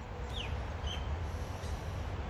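Outdoor ambience: a steady low rumble with a few short, faint high chirps, one of them a quick falling note about half a second in.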